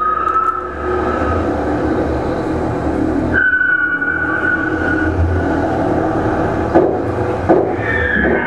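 Concertina reeds sounding long held chords over a low hum; about three and a half seconds in the chord changes to a new, higher held note. Two brief knocks come near the end.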